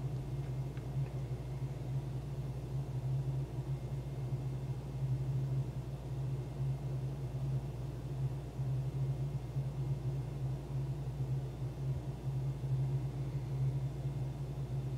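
Steady low background hum with faint hiss and no distinct events.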